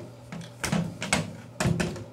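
Steel AK-47 bolt and bolt carrier being handled and fitted together, giving a few sharp metallic clicks and knocks about half a second apart.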